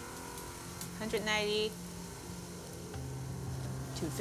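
Gold dust and flakes poured from a bottle into a metal weighing pan, a faint steady hissing trickle, over a low steady music bed. A short voice-like sound comes about a second in.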